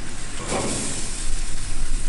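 Whole porgy sizzling on hot grill grates as it is flipped with a spatula. About half a second in, the sizzle flares into a loud hiss as the fresh side meets the hot metal, then settles back to a steady sizzle.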